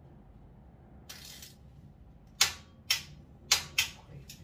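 Four sharp metallic clicks in the second half, each trailing off quickly, from a mountain bike's rear wheel and drivetrain as the wheel is worked into place at the cassette and derailleur. A short rustle comes about a second in.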